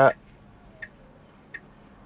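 A car's turn-signal indicator ticking faintly in a quiet cabin, about one tick every 0.7 seconds.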